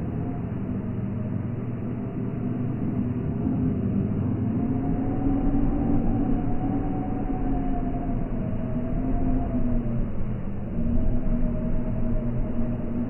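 A low, steady rumbling drone with a few held tones that waver slowly in pitch. It swells gradually in level. It is a dark, ominous ambient bed.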